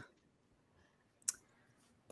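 A single short, sharp click about a second in, otherwise near silence.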